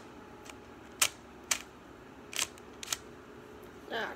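Plastic 3x3 puzzle cube having its layers turned by hand, each turn giving a sharp plastic click. There are about six clicks at uneven spacing, the loudest about a second in.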